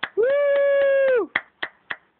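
One person clapping slowly and steadily, about four claps a second, with a long cheering "Woo!" held for about a second over the first claps.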